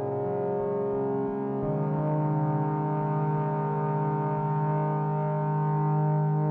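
Electronic synthesizer drone: a slow, sustained chord of held steady tones, with a strong new low note entering about a second and a half in.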